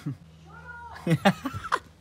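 A faint, distant voice calling back once, a short call that rises and falls, followed by a few soft short sounds.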